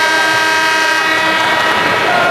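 Basketball arena horn sounding, one steady multi-tone blast of about two seconds that fades near the end.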